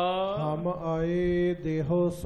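A man's voice chanting in long held notes, sliding from one pitch to the next, in the sung style of Sikh katha, over a steady low sustained note.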